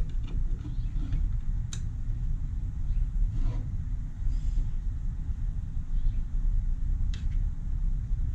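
Steady low background rumble, with a couple of faint sharp clicks as small metal and plastic pump-kit parts are handled.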